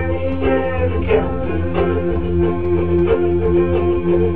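Ukulele strummed in a steady rhythm, with long held notes from a second, sustaining instrument sounding along with it.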